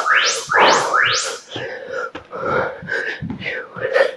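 Three quick rising whooshes, then thumps of a person doing burpees, feet and hands landing on an exercise mat.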